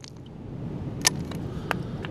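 A hand hammer striking a rounded concretion rock to crack it open: two sharp knocks, about a second in and again just over half a second later.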